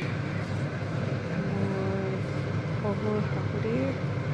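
A steady low machine hum, with faint voices in the background near the end.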